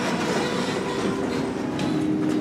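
Steady rattling mechanical rumble from hydraulic elevator machinery, with a low steady hum coming in about a quarter of the way through.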